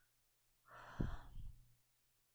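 A person sighing once, a breathy exhale of about a second, with a low puff of breath against the microphone partway through.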